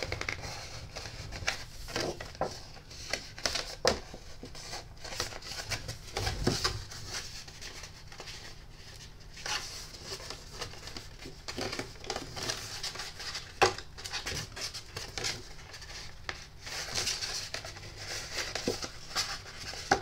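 White cardstock being bent and creased by hand along a curved fold: uneven rustling and scraping of the paper, with scattered light clicks and taps.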